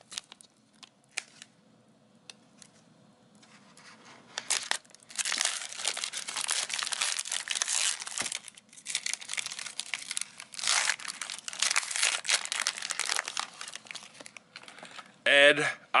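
Plastic trading-card pack wrapper crinkling and tearing as it is ripped open by hand. After a few faint taps, the crackle starts about four seconds in and runs dense for about ten seconds, then stops.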